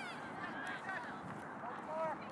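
Distant shouts and calls from players and spectators at a soccer game come from across an open field as short, scattered, pitch-bending cries over steady outdoor background noise.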